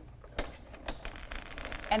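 Hand crank of a Xyron Creatopia adhesive machine being turned, drawing a metal sheet through its rollers to coat it with permanent adhesive: two sharp clicks, then a run of soft rapid ticking.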